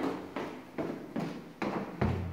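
Footsteps going down a flight of stairs, about five steady footfalls, roughly two and a half a second. Each footfall trails off briefly in an empty, unfurnished room.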